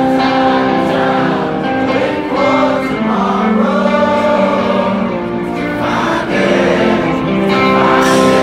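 Live music from an outdoor festival stage heard from within the crowd: many voices singing long held notes together, with no drum beat.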